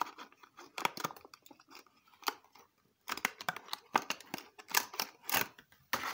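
Clear plastic display case being pried open and handled to take out a diecast model car: a run of irregular sharp plastic clicks, crackles and scrapes, with a short pause about halfway through.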